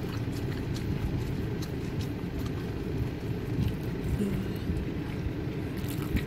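Steady low rumble of a vehicle's engine and road noise heard inside the cabin, with scattered faint light ticks.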